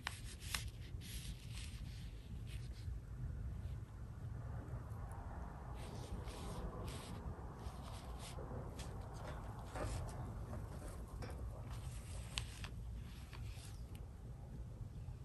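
Chinese brush rubbing and dabbing ink onto semi-sized Jen Ho paper to texture a tree trunk: a faint run of short, scratchy strokes, with a softer continuous rubbing through the middle. A steady low hum lies underneath.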